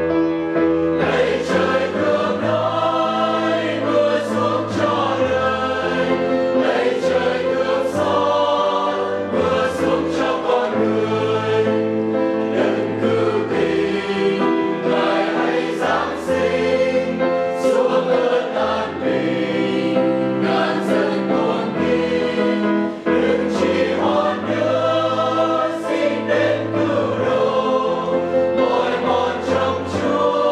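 A Vietnamese church choir of men and women singing a hymn together, holding long sustained notes and moving between them every second or so.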